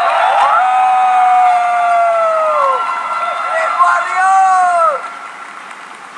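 A voice over a PA system giving two long, drawn-out shouted calls, each held at one pitch and falling off at its end; the second begins about three and a half seconds in.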